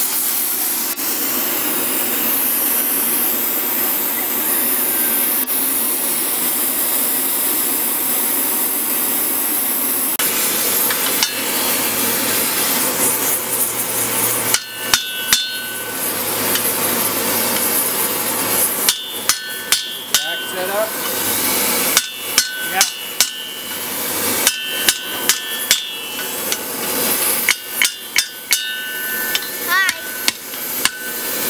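A gas torch hisses steadily as it heats a steel bar. After a cut, a hammer strikes steel on an anvil in quick groups of blows, each strike ringing, as it curls a hinge strap around a pin in a bending jig to form the hinge barrel.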